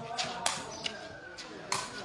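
A sepak takraw ball being struck during play: a few sharp smacks, the loudest about half a second in and another near the end. Faint voices of onlookers can be heard underneath.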